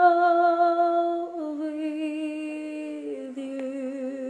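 A young woman singing long held notes with vibrato, stepping down in pitch twice.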